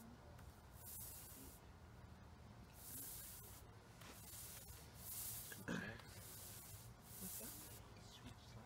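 Faint swishing of a small paint roller spreading wet paint across a painted panel, a soft hiss with each stroke about once a second. One brief louder sound comes a little past halfway.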